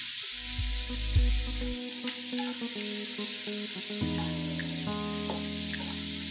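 Sliced onions frying in hot oil in a pot, with a steady sizzle as they are stirred with a wooden spoon, on their way to golden brown. Background music plays over it, its chord changing about four seconds in.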